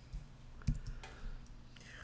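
A computer mouse clicking several times in quick succession, with the loudest click a little before a second in.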